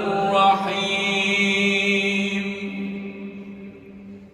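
A man's voice chanting Quranic recitation, drawing out one long held note that fades away over the last second or so, echoing in a large mosque hall.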